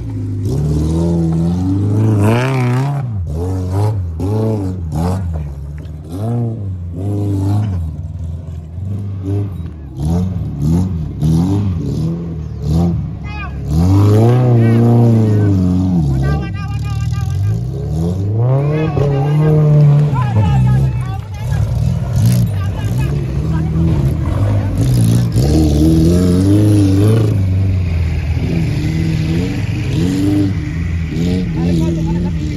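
Daihatsu Feroza 4x4's four-cylinder petrol engine revving up and down again and again under load as it climbs and crawls over steep dirt mounds, with its loudest surges in the middle of the climb.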